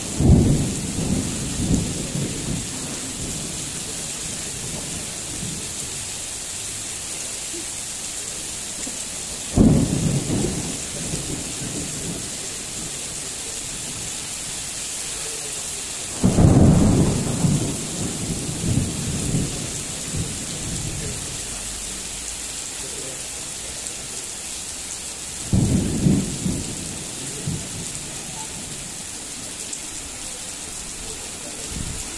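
Heavy rain falling steadily, broken by four loud claps of thunder that each start suddenly and rumble away over a few seconds: right at the start, about ten seconds in, about sixteen seconds in, and about twenty-six seconds in.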